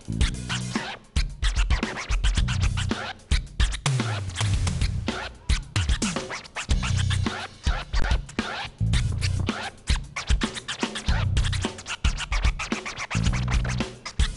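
DJ scratching vinyl records on turntables, rapid chopped strokes and short pitch sweeps, over a live band's bass-heavy groove.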